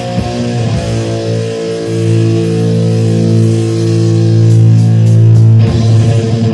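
Thrash/black metal band playing: distorted electric guitar and bass hold one long chord for about five seconds, then busier riffing resumes just before the end.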